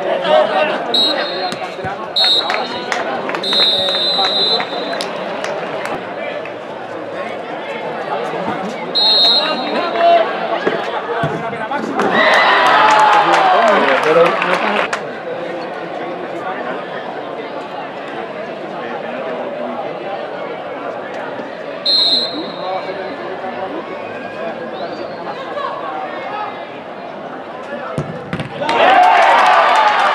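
Live pitch-side sound of an amateur football match: players and spectators shouting and calling over a steady outdoor background. The referee's whistle gives several short blasts near the start, another about a third of the way in and one more later, and a louder burst of shouting comes about halfway through.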